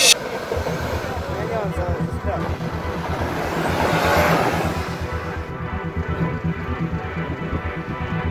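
SsangYong Korando 4x4's engine running under load as it crawls over rock ledges: a low, pulsing rumble that swells louder about four seconds in, then settles back.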